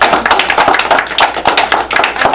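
A small group applauding: many overlapping hand claps.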